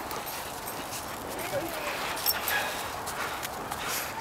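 Footsteps and dogs' paws crunching on packed snow, an irregular scatter of soft crunches.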